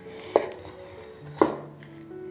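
Chef's knife scoring a raw chicken leg on a wooden cutting board: two sharp knocks of the blade meeting the board, about a second apart, over background music.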